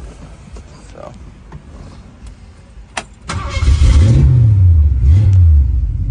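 1965 Ford Mustang's 289 V8 with Flowmaster dual exhaust starting: a click about three seconds in, then the engine fires right up, revs up twice and settles into a steady idle. It starts readily, as it should.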